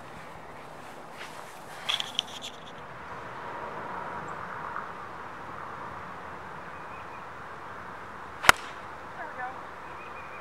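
A single sharp crack of a golf club striking the ball on a full swing, about eight and a half seconds in and the loudest sound, over a faint steady outdoor background.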